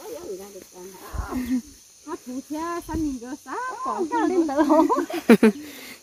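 People talking, in a language the recogniser did not transcribe, with two brief low thumps about one and three seconds in.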